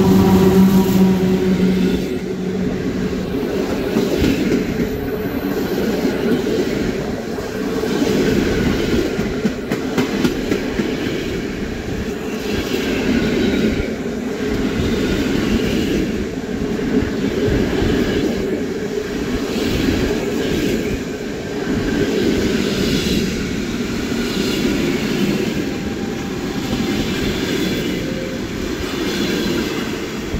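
A long passenger train of Intercity coaches passing at speed close by. There is a continuous loud rumble of wheels on rail with rapid clickety-clack over the joints. A steady humming tone at the start fades away within the first two seconds.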